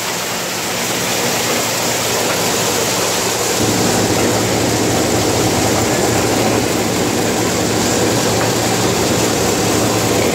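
Pea-harvesting machine running steadily, its engine hum mixed with a dense rushing noise as dried peas move through it. About three and a half seconds in, the engine note shifts and grows slightly louder.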